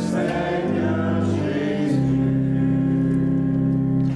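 Mixed church choir singing the closing chords of a sung acclamation. The chords change twice, then a final chord is held for about two seconds and released at the very end.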